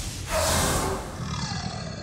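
Cartoon characters screaming in terror, a loud cry that starts about a quarter second in and falls in pitch before fading, over dramatic music.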